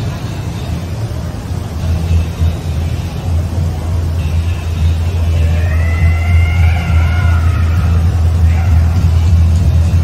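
Busy outdoor city ambience dominated by a steady deep rumble, with music in the background. Midway, a pitched melodic line slides up and down for about three seconds.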